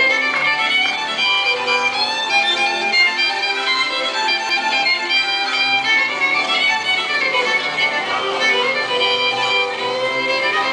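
Country-music fiddle playing a continuous instrumental passage over a line of bass notes.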